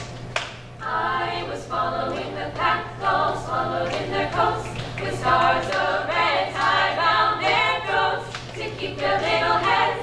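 Female a cappella group singing in harmony in short rhythmic phrases, coming in about a second in, with hand claps keeping time.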